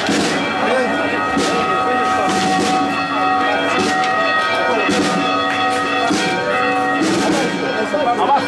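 Church bells ringing festively, struck about once a second, the tones ringing on between strokes.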